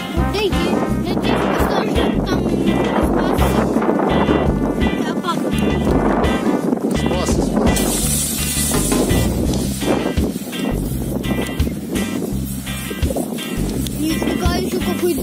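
Background music with vocals and a pulsing bass line, loud and steady.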